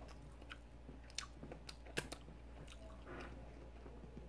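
Faint close-up chewing of a soft glazed donut, with scattered small wet mouth clicks.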